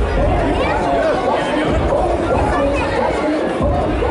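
Crowd chatter in a large gym hall: many voices, children's among them, talking and calling over one another.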